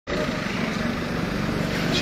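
Steady street traffic noise: an even, continuous rumble of vehicles on an urban road.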